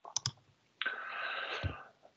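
A few quick sharp clicks, then a quiet breath-like hiss lasting about a second that ends in a soft low thump.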